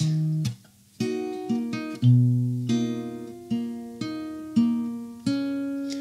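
Acoustic guitar played fingerstyle: bass notes and two-note pairs on the D and G strings, picked with thumb and index in a D-sharp minor shape around the eighth fret. A first note is cut off about half a second in. After a short pause, notes follow roughly every half second, each left to ring and fade.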